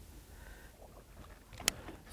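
Faint, steady low rumble of a fishing boat at sea, with one sharp click near the end.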